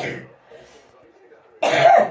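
A person coughing: a short cough right at the start and a louder one near the end.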